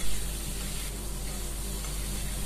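Tomatoes, onion, garlic and ginger sizzling steadily in hot mustard oil in a steel kadhai over a high flame.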